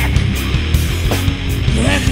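Doom metal band playing: heavily distorted guitars and bass over drums, with a few bending guitar notes.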